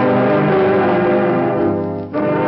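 Radio dance orchestra playing, with the brass holding full sustained chords.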